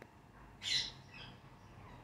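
A rose-ringed parakeet giving one short, loud squawk a little over half a second in, followed by a fainter call.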